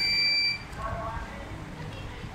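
A single steady electronic beep, high-pitched, lasting about half a second and cutting off sharply, followed by faint children's voices.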